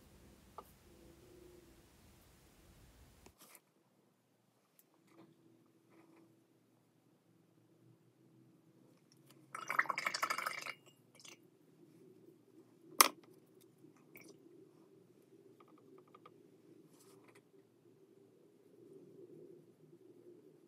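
Quiet sounds of painting by hand: a brush working gouache on paper with faint scratches and small ticks, a dense burst of rustling crackle lasting about a second about ten seconds in, and a single sharp click a few seconds later.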